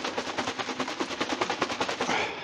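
A container of shellac-based sanding sealer being shaken before use: a fast, even rattle of about a dozen clicks a second that stops at the end.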